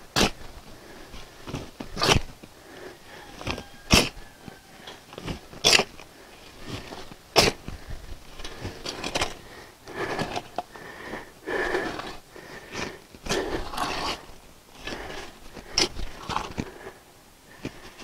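Shovel blade jabbing into a pile of loose soil and tossing it into a hole. In the first half there is a sharp scrape-strike about every two seconds; in the second half the scraping is softer and longer.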